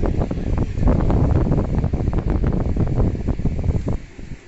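Close handling noise from a comic book and its plastic courier mailer being gripped and shifted right at the microphone: a dense rustling with many small bumps and rubs, which stops abruptly at the end.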